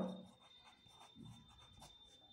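Pencil writing on paper: a few faint, short scratching strokes as a word is written by hand.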